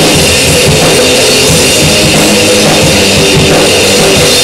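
Loud recorded rock song with a drum kit keeping time, dense and steady throughout.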